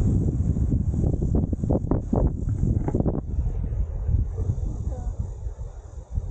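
Wind buffeting the camera microphone, a dense low rumble, with a few sharp knocks and rustles in the first three seconds and brief faint voices near the end.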